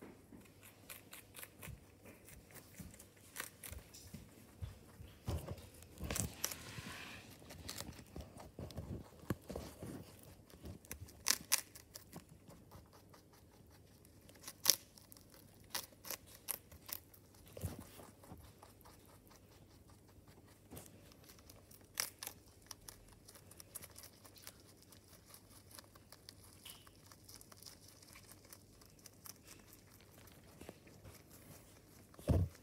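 A rabbit chewing and tearing a leaf of Chinese broccoli (gai lan): a quick, irregular run of crisp crunching clicks, with a few louder bites and short pauses.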